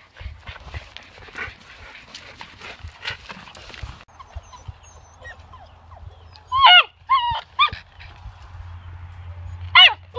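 Puppies yipping: three short, high yips close together a little past the middle, then one more near the end, each falling in pitch. Light scuffling and scratching of puppies at play comes before them.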